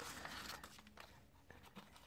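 Faint rustling and crinkling of folded origami paper handled by fingers. It is strongest in the first half second, then a few soft ticks.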